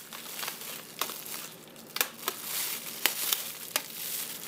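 Thin plastic bag crinkling as it is handled and a rubber band is stretched around it, with a handful of sharp crackles.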